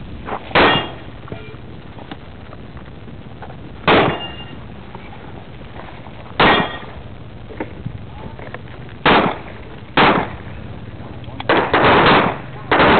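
Pistol shots fired one at a time, a few seconds apart at first and then quicker in a short string near the end, about seven in all. A couple are followed by a brief ring.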